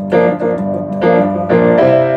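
Upright piano playing a triplet-based rock shuffle pattern in G minor, the two hands trading off in triplets. Accented chords are struck again and again with a strong shuffle feel.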